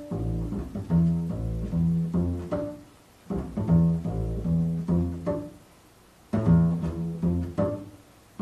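Upright double bass played pizzicato: a repeated plucked figure of low notes, broken by two short pauses, about three seconds in and about six seconds in.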